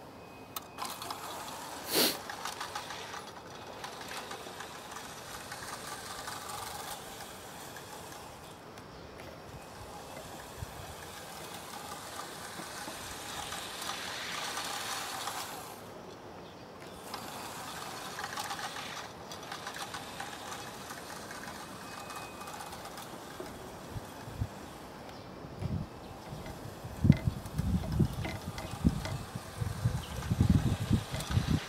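Small electric garden-railway locomotive (Märklin Maxi test engine) running along the track, its motor and gearing whirring steadily with the wheels on the rails. A sharp click comes about two seconds in, and low thumps near the end.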